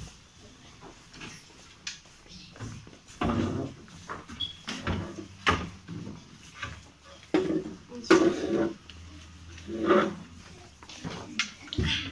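Indistinct children's voices in a small room, with a few short knocks and thumps in between.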